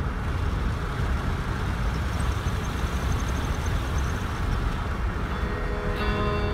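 Wind buffeting the microphone: a steady low rumble with a hiss over it. Guitar music fades in near the end.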